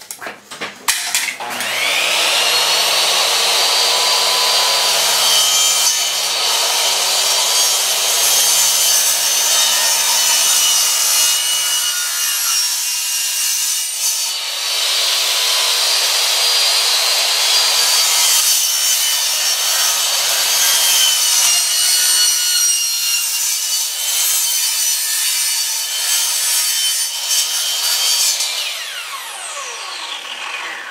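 Miter saw starting up with a rising whine, then cutting through a laptop's keyboard deck and plastic-and-metal case, the blade grinding steadily with two brief easings, before the motor spins down near the end.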